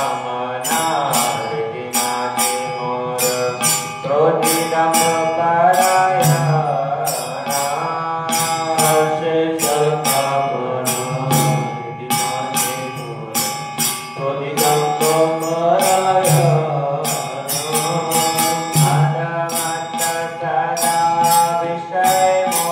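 Devotional chant: one voice singing a slow melody over a steady low drone, with jingling metallic percussion keeping a steady beat throughout.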